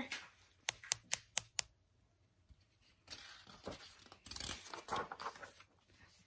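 Five quick, sharp taps on a hard surface, sounding out the 'tap, tap, tapping' on the door. From about halfway through, papery rustling as a picture-book page is turned.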